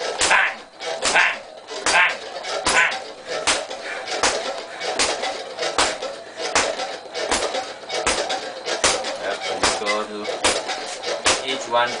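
Boxing gloves punching a hanging heavy bag in a fast, steady rhythm of jab-cross repetitions, about two to three hits a second. A voice calls out near the end.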